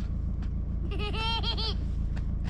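The towing vehicle's engine idling with a steady low rumble, and about a second in a short high-pitched call from a voice.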